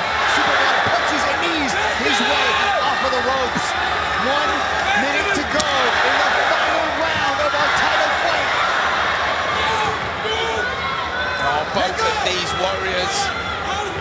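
Arena crowd and cornermen shouting and cheering, many voices overlapping, during a kickboxing exchange. Now and then there is the sharp smack of a strike landing.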